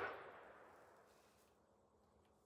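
Echo of a .44 Magnum shot from a Ruger Super Redhawk revolver with a 9.5-inch barrel, dying away over about half a second, then near silence.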